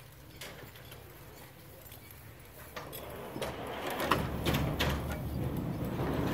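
Hay-hook trolley and rope pulleys clattering along the track under the barn roof as the load of loose hay is hauled up. A string of knocks and a rumble begin about halfway through and grow louder.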